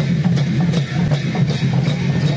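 Sakela dance music played live on Kirati dhol drums, with cymbals keeping a steady beat of about two to three strikes a second.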